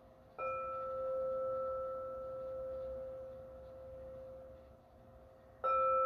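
Singing bowl struck with a mallet twice, about five seconds apart. Each strike rings on in a steady, clear tone with higher overtones that slowly fades.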